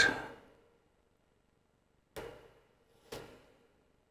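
Two small sharp clicks about a second apart, a metal scissor tip knocking against a small steel vape coil head as the coil's wires are tucked in.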